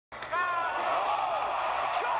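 Arena crowd roaring with a high, excited shout rising over it as a fighter is knocked down, heard through a television speaker.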